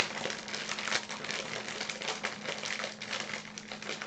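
Foil blind-bag packet crinkling as it is squeezed and handled, an irregular run of crackles.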